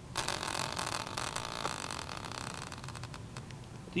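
A hand-spun wheel on a metal caster mount, covered in hockey team logo stickers, whirring with a rapid run of light clicks as it spins. It grows quieter as it slows and stops shortly before the end.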